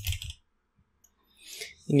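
A few faint computer keyboard keystrokes in a short pause between spoken sentences.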